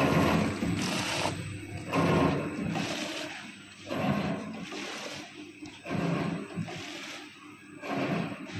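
Vertical powder sachet packing machine running, its cycle making a surge of mechanical noise about every two seconds as each sachet is formed, filled and sealed.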